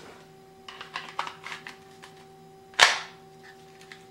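Chiappa Rhino revolver pushed into a Kydex holster: a few soft scrapes and taps of gun on plastic, then one sharp click near the end as the holster's single retention snaps over the gun, the sign that the holster is holding the gun securely.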